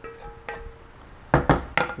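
A utensil knocking and scraping against a metal pan as cooked food is tipped out of it. The pan rings with a clear tone after the first light knocks. A quick cluster of sharper clanks comes near the end.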